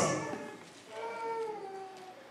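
A faint, drawn-out, high-pitched voice-like call lasting about a second, starting about a second in, after the last word of speech fades.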